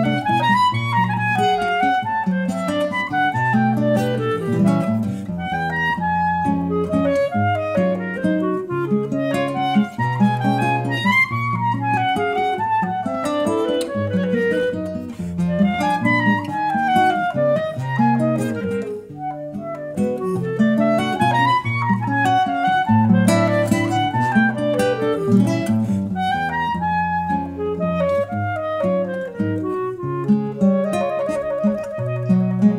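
Clarinet and nylon-string classical guitar duo playing a Brazilian valsa. The clarinet carries melodic runs that rise and fall over fingerpicked guitar accompaniment.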